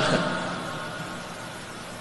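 A pause in a man's amplified lecture: a steady hiss and low hum of the hall and sound system, slowly fading after his last word at the very start.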